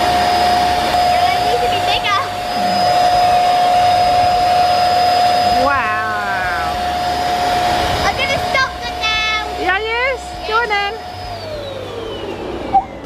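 ZURU electric party pump running with a steady whine as it blows up a batch of self-sealing Bunch O Balloons, then spinning down with a falling pitch near the end.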